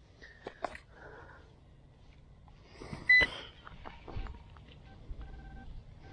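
Short electronic beeps from metal-detecting gear (a pinpointer and metal detector) at a few different pitches, signalling a buried metal target that he reads as either a pull tab or a nickel. Light scratching and clicks of wood mulch being moved come in between the beeps, with the loudest beep and knock about three seconds in.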